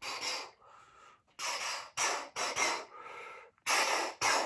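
A man making short, breathy, unvoiced mouth sounds: a string of about six quick hissing puffs, with a brief near-quiet gap about a second in.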